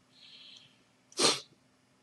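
A man's short, sharp breath noise about a second in, after a faint soft exhale.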